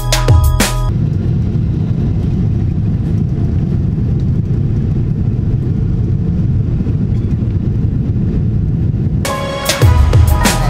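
Steady low rumble of an airliner's jet engines heard inside the cabin as the plane climbs after takeoff. Background music stops about a second in and comes back near the end.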